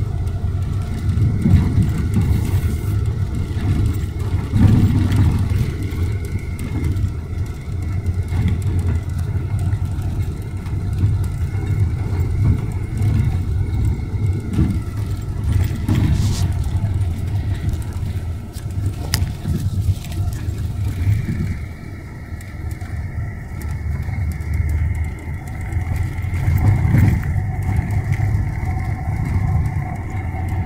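Bus engine and road rumble heard from inside the passenger cabin while the bus drives, a steady low drone that eases for a moment about two-thirds of the way through.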